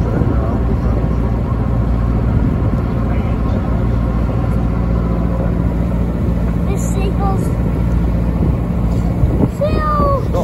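A boat's engine running steadily, a low even drone, with the rush of water and wind around the hull.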